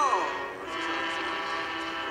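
Soundtrack music from a film trailer: a held chord of many steady tones, opening with a short falling voice-like sound.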